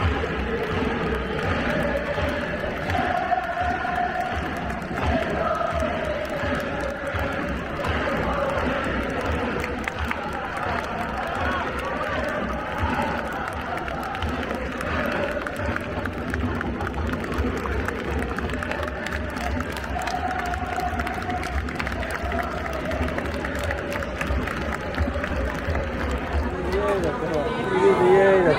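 A stadium crowd of football supporters singing and chanting together in unison, with cheering and clapping mixed in, going on without a break.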